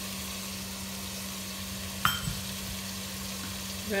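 Onion, ginger and garlic masala sizzling steadily in oil in a pot while salt is added, with one sharp tap about two seconds in.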